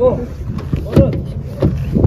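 Short fragments of people's voices over a low, steady rumble.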